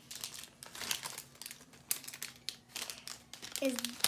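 Plastic prize wrapper bags crinkling and rustling in irregular bursts as hands rummage through them and open them, with a single short spoken word near the end.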